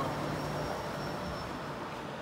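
A Nova Bus LFS hybrid city bus driving past close by and pulling away, a steady hum and road noise that slowly fade, with a faint high steady whine.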